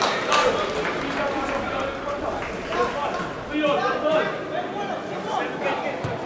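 Footballers shouting and calling to each other during play, the voices carrying around a largely empty stadium, with a few short knocks among them.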